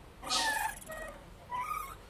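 A cat meowing twice: a short meow just after the start and another about one and a half seconds in.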